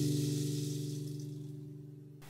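The last strummed chord of acoustic guitar music ringing out and fading away steadily, dying out near the end.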